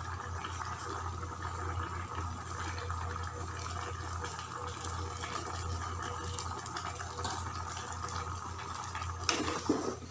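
Chicken stew of chicken, tomatoes and onions simmering in a pot over a gas flame, a steady bubbling hiss. Near the end a spatula stirs and knocks against the pot a few times.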